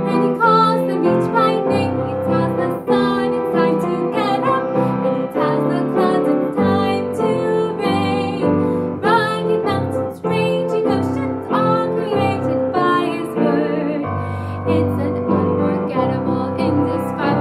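A children's worship song: a woman singing over piano accompaniment.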